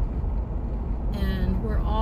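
Steady low rumble of a car driving at road speed, heard from inside the cabin.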